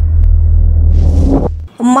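News-bulletin 'breaking news' sound effect: a loud, deep bass rumble with a whoosh swelling about a second in, then the whole effect cuts off sharply. A woman starts reading the news right at the end.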